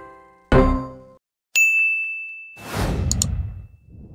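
A closing theme tune ends on a last chord that breaks off about a second in. A bright ding then rings for about a second, followed by a whoosh and two quick clicks, like sound effects for an animated subscribe button.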